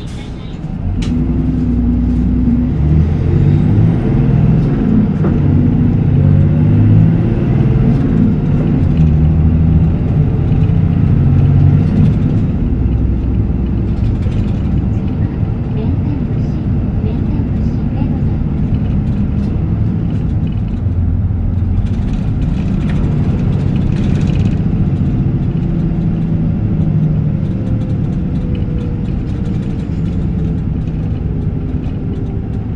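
Isuzu Erga Mio city bus (PDG-LR234J2) diesel engine running as the bus drives, its note climbing in pitch over the first few seconds, then running steadily.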